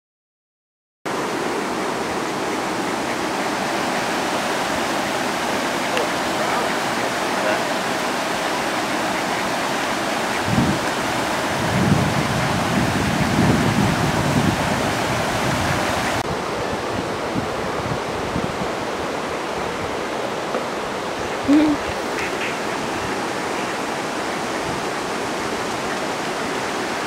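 Steady rush of water pouring over a river weir, starting about a second in, with a few brief low rumbles partway through.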